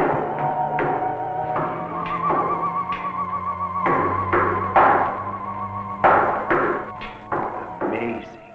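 Eerie film-score music, a high wavering tone held over sustained lower notes, broken by a series of sharp hits, the loudest about five and six seconds in.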